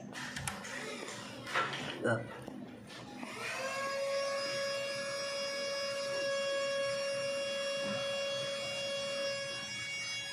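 A few short clicks and knocks of handling, then, about three seconds in, a steady high-pitched tone that swells in with a brief upward slide and holds unchanged.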